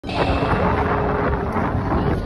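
Wind buffeting the microphone: a steady, low rumbling noise.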